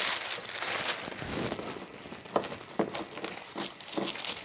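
Clear plastic bag crinkling and rustling as a stack of towels is slid into it and pressed flat, with a few short, sharp crackles in the second half.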